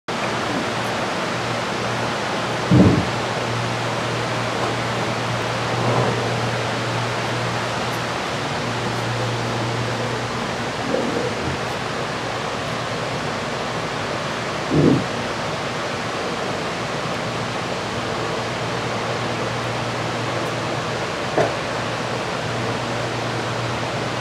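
Steady rushing background noise with a low hum underneath that drops out briefly a few times, broken by a few brief dull thumps.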